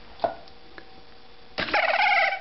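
A single click, then about one and a half seconds in the semi-automated capper's electric motor starts up with a wavering whine as its chuck spins the cap onto the bottle.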